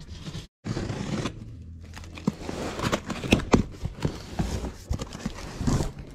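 Scissors cutting through the corrugated cardboard wall of a pallet box: irregular crunching snips, with the cardboard scraping and tearing.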